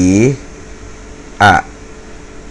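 A man's voice only: a drawn-out syllable that ends shortly after the start, then one short, clipped syllable about one and a half seconds in, over a faint steady room hum.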